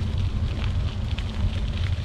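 Wind buffeting the microphone of a handlebar-mounted camera on a moving bicycle, a steady low rumble, with light crackling from the tyres rolling over the wet path.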